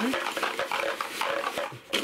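Thick cardboard game tiles clattering and sliding against each other as they are shaken and stirred by hand in a box lid, mixing them.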